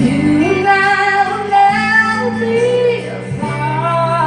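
A woman singing a slow pop ballad into a microphone over a backing track. She holds long notes, her pitch rising near the start.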